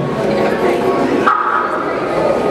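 A male singer's voice over sustained keyboard chords from a live gospel band.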